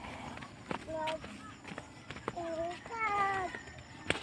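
A small child's voice: three short, high-pitched calls or babbles, the last one falling in pitch, with faint footsteps on a dirt path in between.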